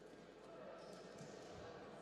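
Faint sports-hall ambience with distant murmuring voices, and a soft low thump about one and a half seconds in.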